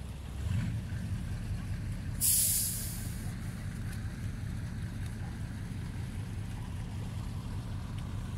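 A heavy cargo truck's engine running with a steady low rumble, and a short, loud hiss from its air brakes about two seconds in.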